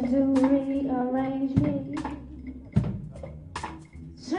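A woman singing live over orchestral accompaniment: she holds one long note, which fades away over the second half. A few short sharp taps cut through.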